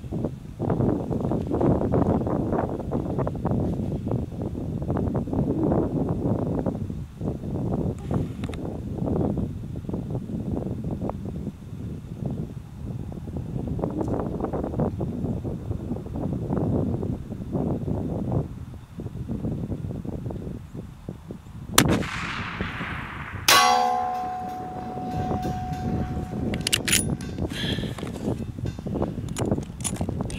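Wind buffeting the microphone, then a single shot from a Savage 110 .338 Lapua rifle about three-quarters of the way through. About a second and a half later comes a metallic clang that rings on and fades: the bullet striking the steel backing plate behind the target.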